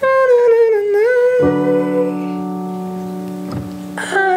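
A voice sings a high held note in head voice, wavering and dipping slightly, for about two seconds. About a second and a half in, a guitar chord is struck and rings on, slowly fading.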